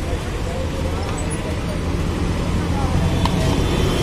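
Busy street ambience: a steady rumble of road traffic with people's voices in the background, and one short sharp click about three seconds in.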